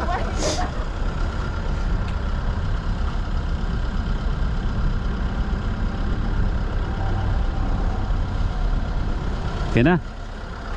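A car engine idling, a steady low rumble, with a short sharp click about half a second in.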